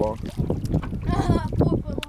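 Voices talking, a word ending at the start and another burst of voice about a second in, over a steady low rumble.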